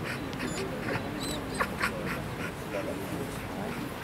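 Spectators' murmur with several short, high-pitched squeaks and chirps scattered through it, the sharpest about a second and a half in.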